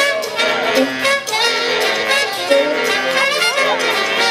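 Live band playing an upbeat brass tune, a trumpet playing the lead line into a microphone over drums and cymbals, with bending notes near the end.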